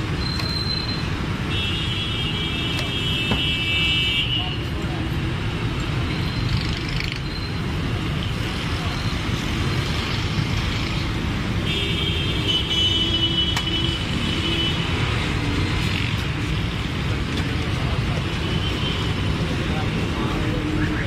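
Steady street traffic noise. A vehicle horn sounds for a couple of seconds near the start and again past the middle.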